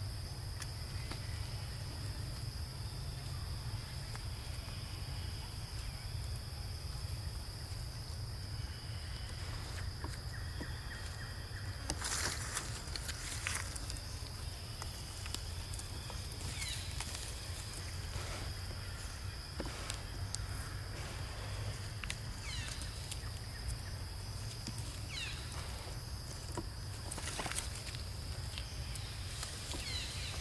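Outdoor ambience: a steady high-pitched insect drone over a low rumble, with scattered short rustles and clicks, the loudest about twelve seconds in, and a few faint brief chirps.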